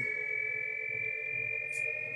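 Shepard tone played from an MP3 file by a DFPlayer Mini module through a small loudspeaker: a few pure sine tones octaves apart, gliding slowly upward so that the pitch seems to keep rising without end.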